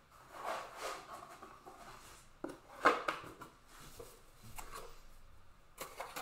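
Trading cards being handled and sorted on a table: rustling, rubbing and light clicks and taps, with the sharpest click about three seconds in.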